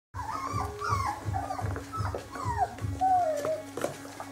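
Four-week-old puppies whining and yipping: a quick string of short, high cries that bend up and down, with one longer falling whine about three seconds in.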